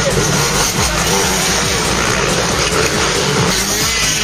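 Motocross bike engines running and revving as riders race through a dirt-track turn.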